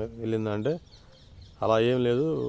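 A man's voice in drawn-out phrases held at a steady pitch. The first phrase ends with a rising glide, then comes a pause of under a second before he goes on.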